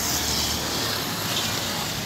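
Steady rushing noise of road traffic passing on a nearby street, with a low rumble in the first second.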